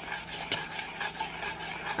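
A spoon stirring thick champurrado in a stainless steel saucepan, with light scrapes and small clicks against the pan and one sharper click about half a second in.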